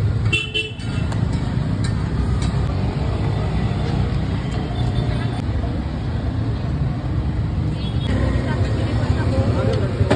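Street traffic noise, a steady low rumble of passing vehicles, with a short vehicle horn toot about half a second in and voices in the background.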